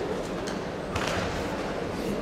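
Steady large-hall ambience with a single sharp thud about a second in, from a karateka's kata technique on the tatami.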